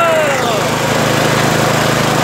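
Green 6.5 HP single-cylinder four-stroke engine, a Chinese GX200-type, driving a concrete vibrator, running steadily after being throttled back, with a falling tone in the first half second.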